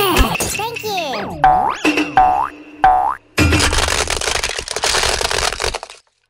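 Cartoon sound effects, springy boings and swooping pitch glides, for the first three seconds. Then about two and a half seconds of loud cracking and crunching as plastic toy trucks are crushed under a car tyre, cutting off suddenly at the end.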